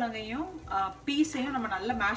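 Someone talking almost throughout, over a faint sizzle of onion-tomato masala frying in a pan on a gas stove.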